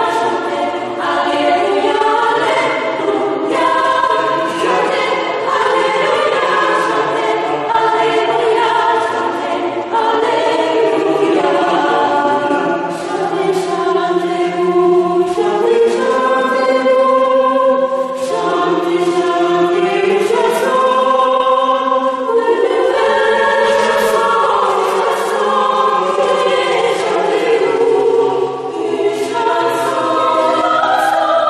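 Small mixed-voice polyphonic choir singing a cappella, several parts moving together in sustained chords.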